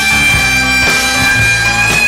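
Rock band in an instrumental break: a long held, reedy harmonica note that bends up slightly near the end, over bass guitar and drums.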